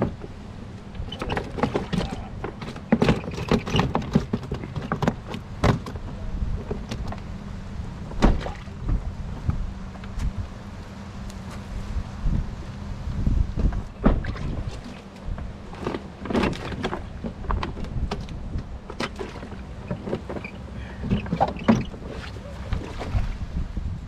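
Irregular knocks, rustling and splashing as fish are handled in a plastic bag and a plastic weigh-in basket, over a low rumble of wind on the microphone.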